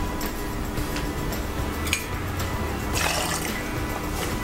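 Liquid poured from a small bottle into a metal bar jigger, over background music; a short clink about two seconds in.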